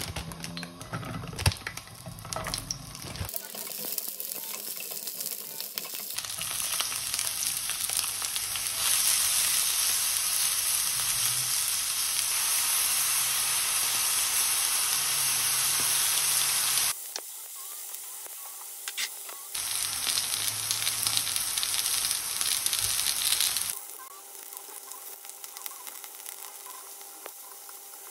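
Small green peppers and enoki mushrooms sizzling in hot oil in a nonstick frying pan, with a few clicks and knocks in the first seconds. The sizzle swells to a loud steady hiss, breaks off abruptly a few times, and is quieter near the end.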